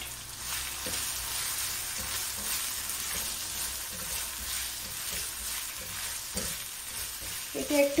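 Chopped onion and ginger-garlic paste frying in hot oil in a wok, stirred with a spatula. There is a steady sizzle with occasional soft scraping strokes.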